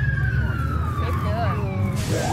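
A distant siren wailing, its long tone sliding slowly down in pitch, over a steady low rumble of wind and traffic.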